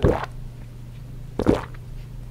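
A person gulping water from a plastic bottle to wash down pills: two short gulps about a second and a half apart, over a low steady hum.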